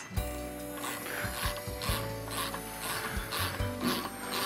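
Hand ratchet clicking in short repeated strokes, about two a second, as a thread restorer is run into a sprocket bolt hole of a motorcycle rear wheel hub to clean the threads.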